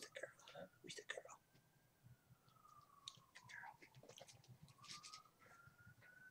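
Near silence: a faint tone that slowly rises and falls in pitch over several seconds, with a few soft scattered clicks and rustles.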